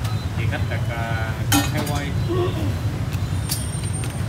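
Steady low rumble of nearby motor traffic, with voices in the background and a single sharp metal clink about one and a half seconds in.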